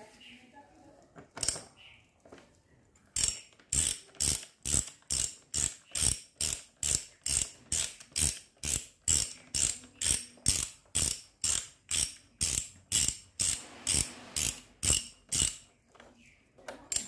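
Socket ratchet wrench with an extension being swung back and forth on a bolt, its pawl clicking. There is a single burst of clicks about a second and a half in, then a steady run of ratcheting strokes about two a second from about three seconds in until just before the end.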